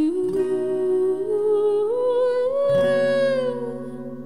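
A woman humming a long wordless melody that climbs slowly in pitch and falls away near the end, over acoustic guitar chords, with a fresh chord strummed about three seconds in.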